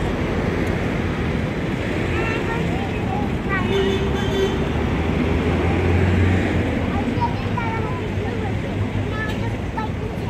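Busy street ambience: steady road traffic noise, louder as a vehicle rumbles past about six seconds in, with scattered voices of passers-by.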